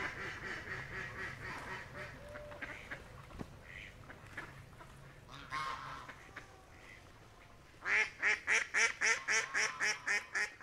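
Ducks quacking: soft, scattered calls at first, then a loud, rapid run of quacks, about four a second, starting near the end.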